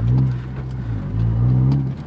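Honda Civic Si's 2.0-litre i-VTEC four-cylinder heard from inside the cabin, pulling on light throttle at low revs of around two thousand rpm. It eases off about half a second in and builds again near the end.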